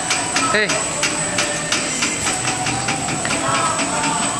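Coin-operated kiddie carousel turning, its plastic ride figures giving off irregular clicks and knocks, with a steady high whine behind them.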